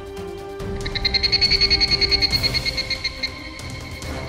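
A phone ringing: a high, rapidly pulsing trill that starts about a second in and stops about three seconds in, over background music.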